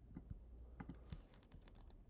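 Near silence with faint, scattered clicks of a computer keyboard.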